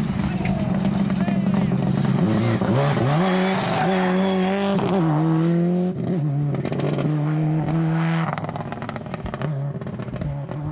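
Subaru Impreza rally car's turbocharged flat-four engine revving hard on a gravel stage, its note climbing and holding high, then dropping several times at each gear change as the car accelerates past and away. Sharp crackles come through in the second half as it pulls off.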